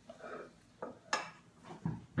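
A table knife scraping and clinking against a china plate and a cracker while almond butter is spread. A soft scrape comes first, then a few sharp clicks, the loudest about a second in.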